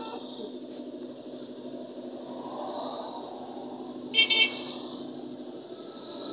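A horn beeping twice in quick succession, two short high-pitched toots about four seconds in, over steady background noise.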